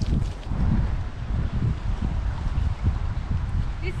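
Gusty wind buffeting the camera microphone, a low rumble that swells and drops.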